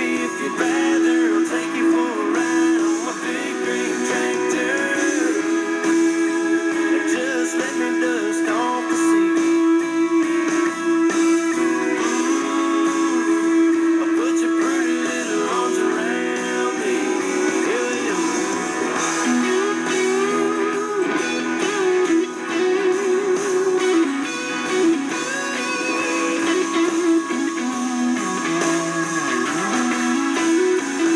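Background music: a country song on the radio in an instrumental stretch, led by strummed and plucked guitar, with no singing.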